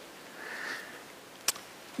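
A man sniffs once through his nose, a soft rush of air. About a second and a half in there is a single sharp click.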